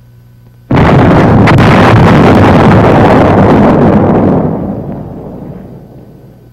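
Dynamite charges detonating a dud 250-pound high-explosive bomb. The blast starts suddenly just under a second in, stays loud for about three and a half seconds, then dies away.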